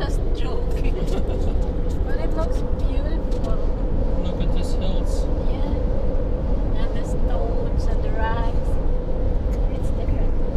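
Steady road and engine noise heard inside a truck's cab while driving at highway speed, with a low hum and a steady mid-pitched tone from the tyres and drivetrain. Faint, indistinct voices come and go over it.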